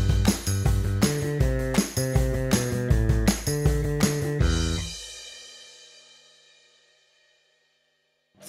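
Background music with a drum beat and cymbals, which stops about four and a half seconds in, its last notes dying away into silence.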